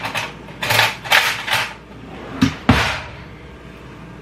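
Kitchen handling noises: a few short scraping, rustling bursts in the first second and a half, then two sharp knocks close together about two and a half seconds in.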